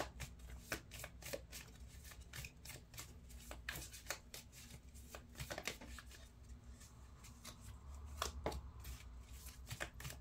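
A stack of small round tea leaf cards being shuffled by hand: a quiet, irregular run of soft flicks and clicks as the cards slide over one another.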